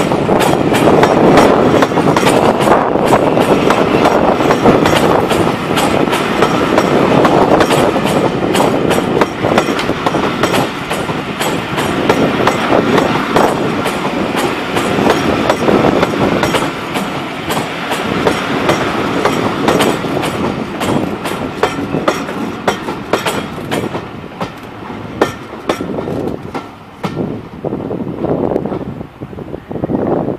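Railway passenger coaches rolling past slowly, their wheels clacking over rail joints and pointwork in a fast, uneven run of clicks. The noise thins and fades over the last several seconds as the end of the train draws away.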